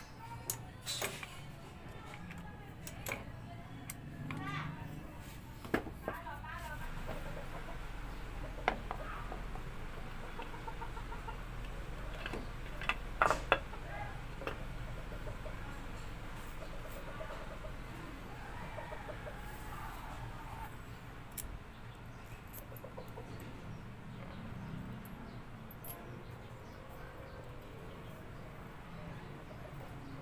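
Scattered sharp metal clicks and knocks, loudest a little past the middle, as the aluminium cylinder head cover is handled and seated back onto the motorcycle engine. Behind them is a quiet background with chickens clucking now and then.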